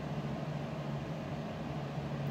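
Steady room tone: a low, even hum with a faint hiss behind it, unchanging throughout.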